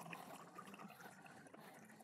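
Faint trickle of 190-proof alcohol being poured from a bottle into a glass, with a few tiny ticks in the first second.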